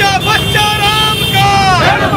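A crowd shouting a chanted slogan in unison, with long held calls that fall away near the end, over the steady hum of many idling motorcycles.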